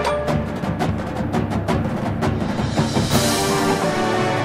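Marching band playing, with rapid drum and timpani strikes driving over sustained brass chords, and a crash about three seconds in.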